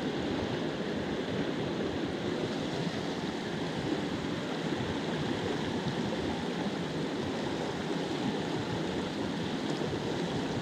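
Rushing water of a small mountain trout stream running high and fast after heavy rain, a steady, unbroken rush.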